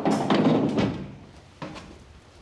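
A fire engine's roll-up compartment door being pushed open: a knock, then about a second of rattling as the shutter rolls up.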